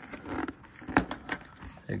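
Light clicks and taps of hands handling hard plastic engine-bay parts and rubber vacuum lines, the sharpest click about a second in.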